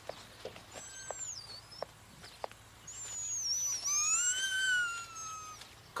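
A dog whining in high-pitched cries: a short falling one about a second in, then a longer one that rises and slowly falls between about three and five and a half seconds.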